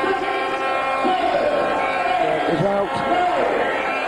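Boxing crowd shouting around the ring, with loud single voices calling out from the crowd about two and a half seconds in, over a steady hum.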